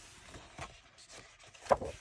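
Paper pages of a coloring book being turned by hand, rustling softly, with one short louder flap of paper near the end.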